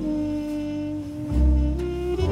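Jazz horn section of tenor saxophone, trumpet and trombone holding slow harmonized notes over acoustic bass, with a deep bass note swelling loudest about two-thirds of the way in.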